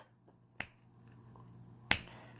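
Two short, sharp clicks, a faint one about half a second in and a louder one near the end, with a faint low sound between them.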